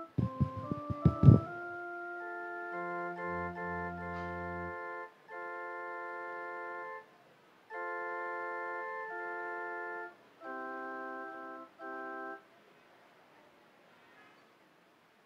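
Organ playing a short interlude of sustained chords in several held phrases with brief gaps between them, with a deep bass note under one chord, stopping about twelve seconds in. A few loud low thumps come in the first second and a half.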